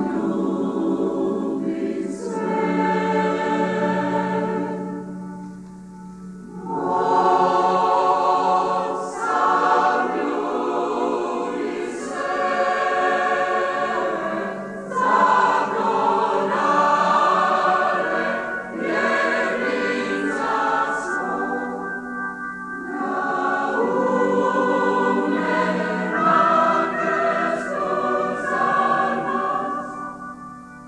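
A large mixed church choir of men's and women's voices singing a hymn in sustained phrases. There is a brief lull between phrases about six seconds in.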